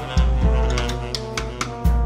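Jazz from a drums, tenor saxophone and trombone trio: drum hits in a steady run over sustained low horn notes and pitched horn lines.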